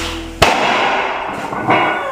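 A single sharp thud about half a second in, as the loaded barbell's bumper plates set down on the wooden platform between deadlift reps, with background music playing.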